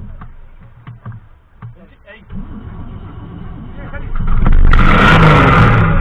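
Safari race car engine: a low running sound with a few light knocks, then about four seconds in a loud burst of revving as the engine is accelerated hard.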